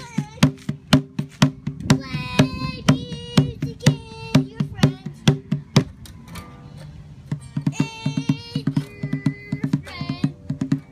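Small acoustic guitar strummed hard in a steady rhythm of about three to four strokes a second by a young child, with his wordless singing over it. The strumming thins out and goes quieter a little past the middle, then picks up again.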